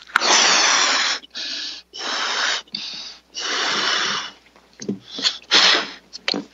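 A person blowing up a rubber balloon by mouth: a run of hard puffs of breath into it, each under a second long, with short pauses between for breaths in.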